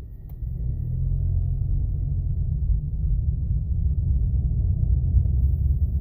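Low rumble of a car's engine and tyres heard from inside the cabin while driving. It gets louder about half a second in, then runs steadily.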